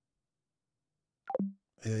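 Dead silence on the phone line, then a single short blip falling in pitch about a second and a quarter in. A man's voice starts near the end.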